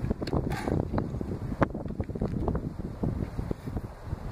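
Wind rumbling on the microphone, with irregular small clicks and crackles throughout.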